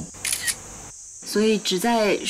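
A person speaking: a short phrase near the start, a brief pause about a second in, then talk resumes.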